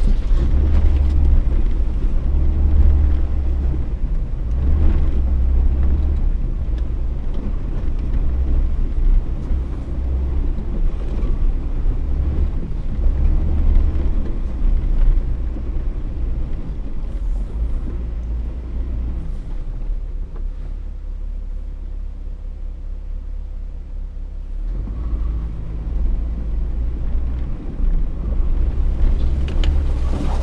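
Off-road vehicle engine and drivetrain running under load while creeping through deep snow, a steady low rumble that eases off for a few seconds about two-thirds of the way through, then picks up again.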